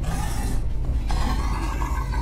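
Dark ambient background music: a steady low drone with a faint rasping texture above it.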